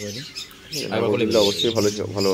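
Small pet parrot squawking repeatedly while it is held in the hand for treatment of egg binding, with the egg at its vent. The calls stop briefly about half a second in, then come back louder.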